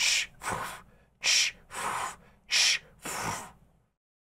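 A woman's breathless, wheezing laughter: three loud gasping breaths, each followed by a softer one, with no words.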